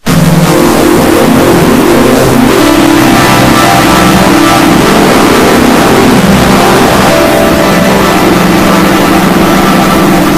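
Heavily distorted, effects-processed audio of an animated logo's jingle: a loud buzzing drone of several held tones that step and shift in pitch, starting right after a split-second dropout.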